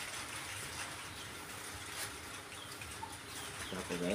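Low background noise with a short fowl call near the end.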